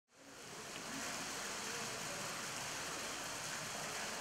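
Steady rushing of water in a hippo pool, fading in over the first second and then holding even, with no distinct splashes.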